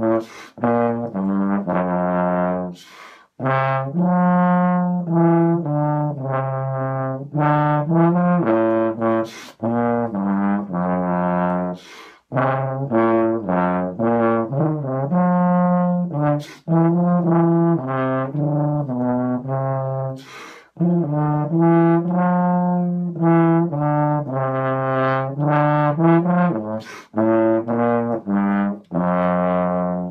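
Chinese-made BBb/F contrabass trombone playing a melodic phrase of low, full notes, blown through the stock no-name mouthpiece that comes with the instrument. The phrase breaks off briefly for breath a few times.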